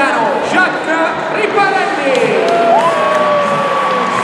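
Stadium crowd: a steady din of many voices and cheering. In the second half come two long held tones, one sliding slowly down and the other rising, then holding steady.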